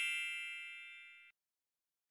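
Bright, bell-like chime of a logo sting ringing out and fading away, gone about a second and a half in.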